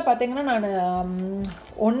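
Speech only: a woman's voice drawing out one long word for about a second and a half, then a short pause.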